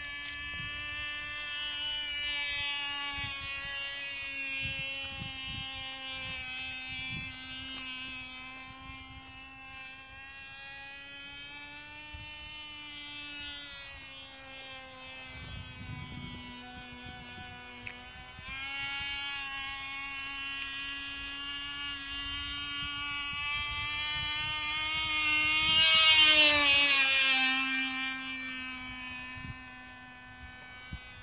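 A Cox .049 Tee Dee two-stroke glow engine in a flying model airplane gives a high, steady buzz that swells and fades as the plane circles. Near the end it passes close and loud, its pitch dropping as it goes by.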